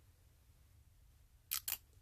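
Near silence, then about one and a half seconds in, two quick crisp clicks as fingers handle a small clear jar with a black lid while pressing a printed label onto its side.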